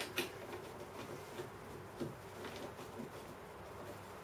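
Faint clicks and light handling noise of a plasma cutter torch's air lead and its brass fitting being handled at the machine's front panel. A few soft ticks stand out, one just after the start and one about two seconds in.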